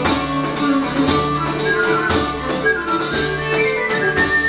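A saltarello, a fast medieval dance tune, played live by a small ensemble: bowed fiddle, a plucked lute-like string instrument, a hand-beaten frame drum and a wind pipe. Held notes over a steady low note, with a quick melody and a regular drum beat.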